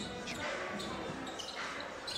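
Court sound at a basketball game: a few basketball bounces on the hardwood floor over a steady low murmur of voices in the arena.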